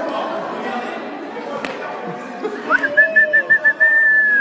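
A high whistle starts about two-thirds of the way in: a quick rise, a run of about six short toots, then one held note that slides down, over a background of voices and chatter.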